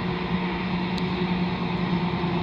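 Steady drone of the diesel locomotives of an approaching freight train, a low even engine hum over a broad rumble.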